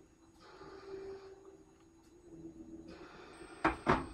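Hot water from a tea kettle poured into a bowl of instant oatmeal, heard as a faint hiss of pouring in two short stretches. Near the end come two sharp knocks.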